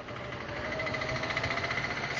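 An engine running steadily with a fast, even pulse, growing slowly louder.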